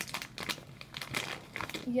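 Plastic Airheads candy wrapper crinkling as it is pulled open and handled, in quick irregular crackles.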